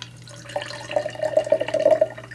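Ice-chilled water pouring from a stainless steel cocktail shaker's strainer cap into a tall glass. The stream starts about half a second in, with a tone that rises slightly as the glass fills.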